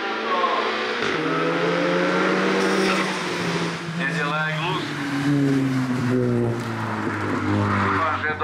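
VW Golf GTI hill-climb race car's engine revving hard through a tight bend. The pitch climbs and drops several times as the driver works the throttle and changes gear, with the sound nearing and then pulling away.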